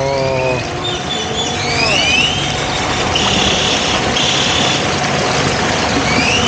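Small boat's motor running steadily with water rushing along the hull, while birds call over it with rising whistles, two of them about two seconds in, and a high two-part note just past the middle.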